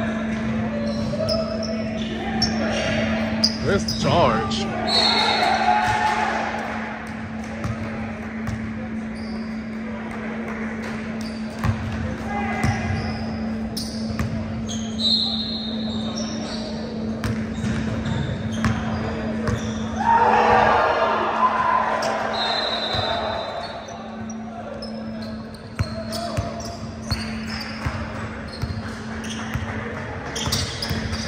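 Basketball bouncing on a hardwood gym floor, with indistinct voices echoing in a large gymnasium and a steady low hum throughout.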